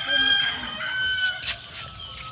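A long, held animal call in two parts: a steady note for about the first second, then a slightly lower one that stops about a second and a half in.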